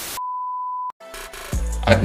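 Static hiss cutting to a single steady high beep lasting under a second, like a TV test-tone transition effect. Music with a deep bass comes in about a second and a half in.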